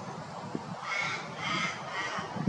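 Three harsh, caw-like bird calls in quick succession, starting about a second in, over low wind rumble.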